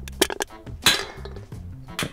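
An aluminium soda can being crushed: a run of sharp metallic crunches and clinks, the loudest about a second in. Music with a bass line plays under it.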